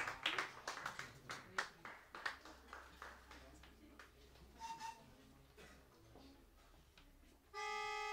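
Audience applause dying away to a few scattered claps over the first few seconds, followed by a quiet, murmuring lull. Near the end a steady sustained chord starts abruptly.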